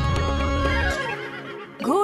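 Instrumental backing music with a bass line, fading out about a second in. Near the end, a cartoon horse whinny sound effect rises sharply in pitch.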